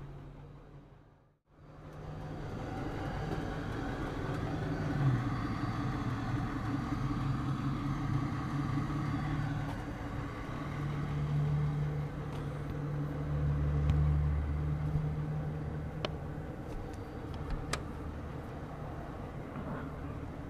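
A vehicle engine running steadily, its pitch stepping up and down a few times, after a short silent break near the start. A couple of light clicks near the end.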